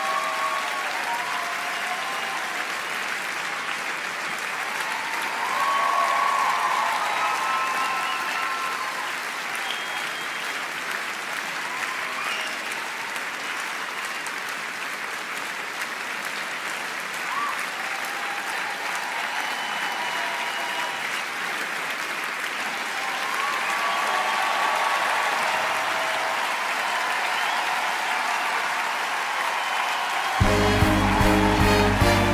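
Large theatre audience applauding steadily, with scattered cheers and whoops, in a long ovation for the cast's bows. The applause swells about six seconds in and again near the end.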